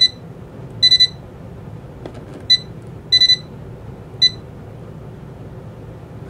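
Janome MC9000 sewing machine's control panel beeping as its buttons are pressed: short high beeps, some single and some in quick runs of three, over about four seconds. The machine will not let the automatic thread tension be overridden for this stitch.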